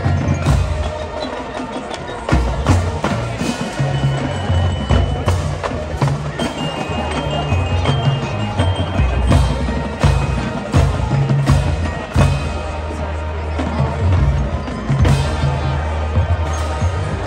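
High school marching band playing a halftime field show: brass over a drumline, with a moving low bass line, frequent sharp drum hits and some held high ringing notes.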